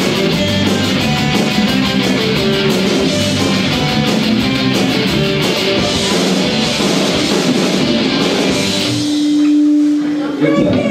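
Punk rock band playing live, electric guitars and a drum kit, at a loud steady level. Near the end the playing gives way to a single held note, as the song closes.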